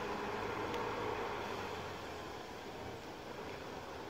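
Diesel engine of a Volvo B10BLE 6x2 city bus running at low speed as the bus creeps away, a steady low hum that slowly fades.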